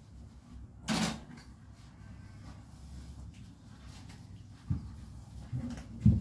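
Kitchenware being handled at a sink during dishwashing: one sharp clatter about a second in, then a few low knocks near the end.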